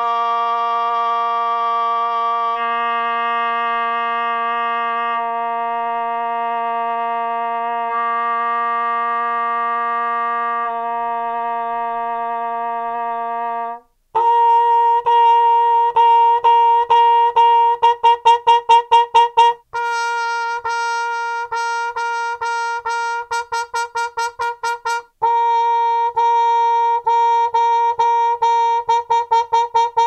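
Trumpet played through Harmon cup mutes, the modern Harmon Triple Play and then a 1930s Harmon cup. It holds one long note for about fourteen seconds, then after a brief break plays short tongued notes in quick repeated runs.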